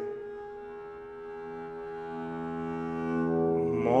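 Double bass sounding a bowed multiphonic, the left-hand finger barely touching the string. It is one sustained note, rich in overtones, that swells slowly louder toward the end.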